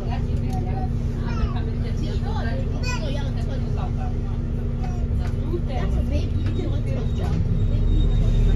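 Interior running noise of a New Routemaster hybrid double-decker bus on the move, heard from the upper deck: a steady low rumble with a constant hum, building louder near the end. Passengers chatter indistinctly over it.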